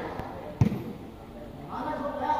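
A ball struck once with a short, dull thud about half a second in, during a head-and-foot ball game, with voices of onlookers around it.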